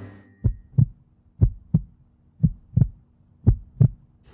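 Heartbeat sound effect: four lub-dub double thumps about a second apart, over a faint steady hum.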